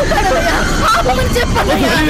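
Several voices talking and shouting over one another in a loud, agitated jumble.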